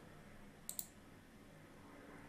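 Computer mouse clicking twice in quick succession, starting animation playback; otherwise faint room hiss.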